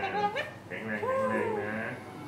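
Speech only: people talking in high, sing-song voices, with one long rising-and-falling voice about a second in.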